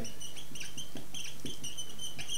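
Dry-erase marker squeaking on a whiteboard as a word is written, in a quick run of short, high-pitched squeaks.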